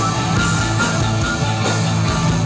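A rock band playing live with electric guitar to the fore over bass and drums: a steady, loud instrumental passage.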